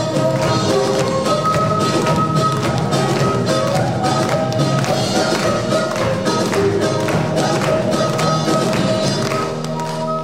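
Gayageum played with rapid plucked notes over a Korean traditional orchestra, an instrumental passage without singing.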